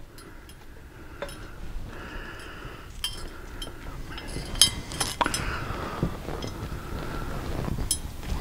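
Scattered light metallic clinks and ticks of a nut and metal ball chain knocking against the inside of a motorcycle handlebar tube as they are dropped and worked down through it, a few sharper clinks about halfway through.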